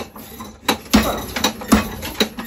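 Homemade treadle hammer, a sledgehammer head on a pipe arm, striking a piece of brick on the anvil post in a quick series of sharp knocks, about two a second. The brick is being crushed to powder.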